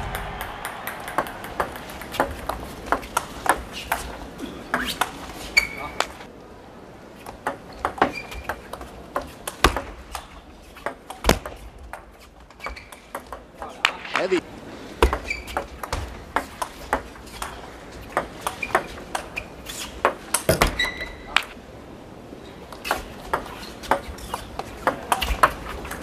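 Table tennis ball clicking off rubber bats and the table in quick doubles rallies, in runs of rapid strokes broken by short pauses between points. A few short high squeaks of players' shoes on the court floor come between strokes.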